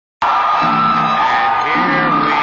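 Live rock band playing at a concert, heard loud from the audience, with a held high note over the band and crowd whoops and shouts. The sound starts suddenly just after the beginning.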